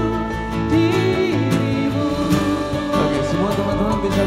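Live acoustic band performance: a man and a woman singing into microphones over acoustic guitar and keyboard.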